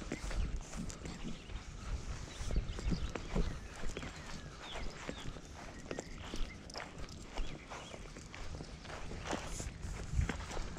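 Handling noise on a body-worn camera: footsteps on grass and a fleece sleeve and leash rustling, with scattered light clicks and low bumps at an irregular pace.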